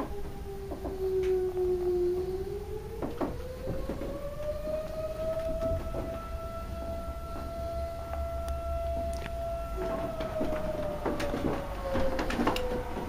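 A long, steady, siren-like tone that rises in pitch about three seconds in, holds, and slides back down near the end, with scattered light knocks.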